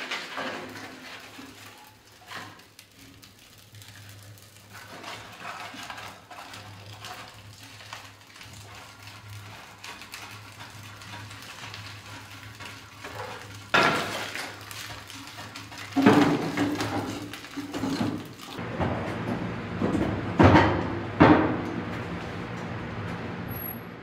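Kindling and split firewood being loaded into a wood stove's firebox: a string of knocks and clatters of wood against wood and the stove's metal, with a few hard knocks in the second half.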